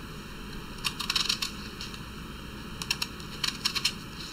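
A metal spoon and knife clicking and scraping against a marble mortar while scooping herb and spice stuffing, in two clusters of small quick clicks: one about a second in, another from about three seconds in.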